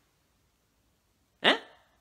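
Near silence, then about one and a half seconds in a single short vocal sound from a man, falling in pitch.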